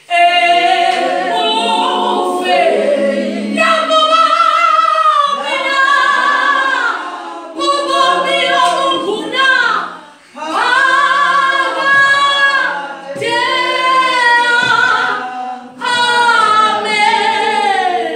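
A group of voices singing a church song a cappella, with no instruments, in held phrases of a few seconds with short breaks between them.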